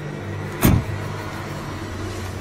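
A car door slammed shut once, a single heavy thump about two-thirds of a second in, over a steady low hum.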